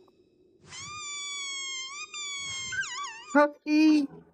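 A newly hatched cartoon creature's long, high-pitched cry, held for about two seconds and then wavering up and down, followed by two short, louder, lower cries near the end.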